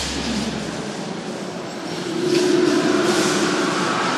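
Sampled ambient sound design in a metal track, with the band silent: a low sustained bass note fades out within the first second, leaving a steady, machine-like noise texture, and a steady hum comes in about halfway through.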